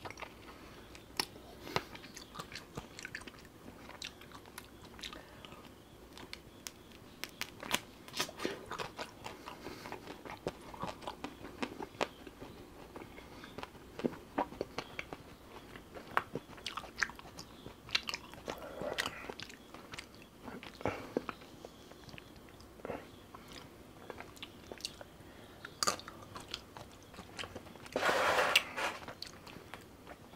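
Close-miked mouth sounds of a man biting and chewing a pistachio kulfi ice cream bar: a steady scatter of short wet clicks and smacks. A louder noisy burst lasting about a second comes near the end.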